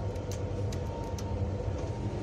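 Steady low rumble of a moving passenger train, heard from inside the coach, with a few light clicks and rattles.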